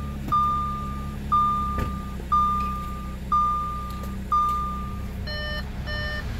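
Car warning chime: a single steady tone beeping about once a second, six times, then near the end changing to a quicker, multi-note chime. Under it, the low steady hum of the Audi S5's 3.0 TFSI V6 idling just after starting.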